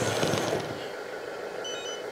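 RC bulldozer's electric track drive running briefly as the stick is pushed forward, a whirring, rattling burst that fades within about half a second into a low steady hiss. A faint short electronic beep sounds near the end.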